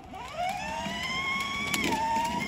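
Electric motor and gearbox whine of a children's ride-on toy car as it drives off: the pitch rises quickly, holds steady, and dips a little near the end.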